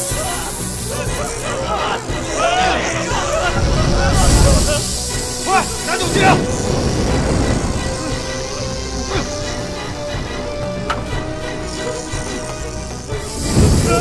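Tense film score with held notes under people's shouts and cries, and heavy low swells about four and six seconds in.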